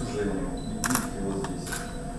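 Quiet speech in a small room, with two short hissing sounds about a second in and near the end.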